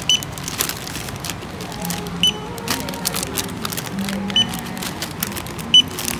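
Checkout barcode scanner giving short high beeps every one and a half to two seconds as packaged items are scanned, with plastic packets crinkling and clicking between beeps. Faint background music underneath.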